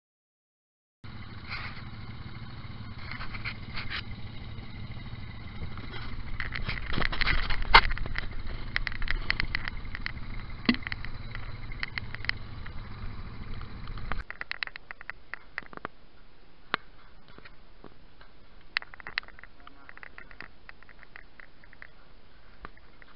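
Quad bike engines running steadily at low speed, with irregular knocks and clicks; the loudest is a sharp knock about 8 seconds in. About 14 seconds in the engine rumble cuts off abruptly, leaving faint scattered clicks.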